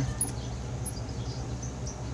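Steady low background hum with two faint, brief high-pitched chirps, one just after the start and one about a second in.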